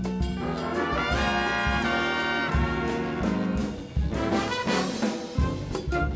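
A jazz big band playing a tune, led by its trumpets, trombones and saxophones. About a second in the horns hold loud chords together, then break into shorter, punched figures over a steady beat.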